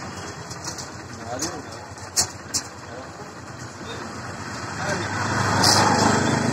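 Busy market-street background noise: a steady low rumble with voices underneath and a few sharp clicks, swelling louder near the end.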